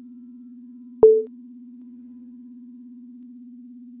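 A steady low electronic buzzing hum, with a sharp click and a short higher beep about a second in.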